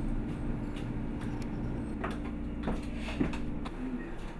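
A steady low electrical-sounding hum with a few light knocks and clinks of kitchenware; the hum cuts off shortly before the end.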